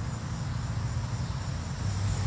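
Steady outdoor yard ambience: an even hiss with a low hum underneath from a distant lawn mower.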